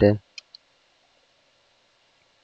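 Two quick clicks of a computer keyboard key being pressed, followed by a faint steady hiss.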